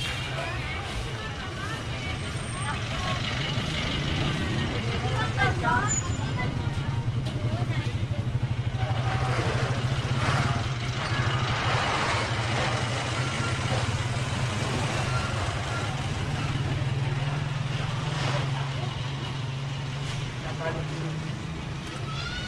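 Busy street sound with a jeepney's engine running steadily close by, a low hum that is loudest in the middle. Passers-by talk over it now and then.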